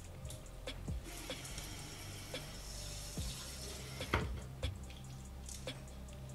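Water running from a tap for about three seconds, starting about a second in and cutting off suddenly, over quiet background music, with a few light knocks.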